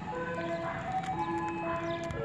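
Ice cream van's loudspeaker playing its jingle, a simple tune of clear held notes, as the van drives away, with a low engine and road rumble underneath.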